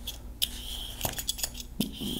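Dual-blade metal vegetable peeler scraping along a cucumber's skin. It makes three short, sharp strokes, roughly two-thirds of a second apart, as it is worked back and forth.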